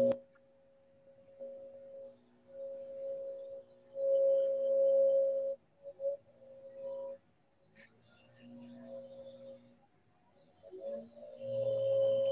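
Background construction noise: a steady hum with a few overtones that cuts in and out in stretches of one to two seconds.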